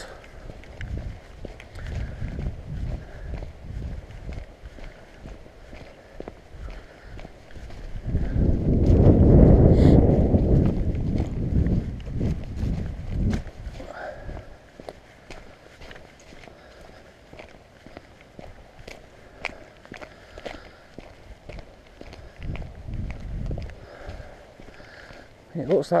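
Footsteps walking on wet tarmac and grit. A louder low rumble lasts a few seconds about a third of the way in.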